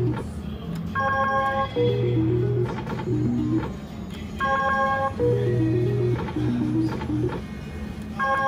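Three-reel $5 Double Jackpot slot machine's electronic spin sounds: a short chord of steady beeps, then a stepped falling tune. The pattern comes twice, about three and a half seconds apart, once for each spin.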